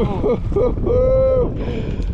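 Excited wordless exclamations from a voice, with one long held cry about a second in, over wind rumbling on the microphone.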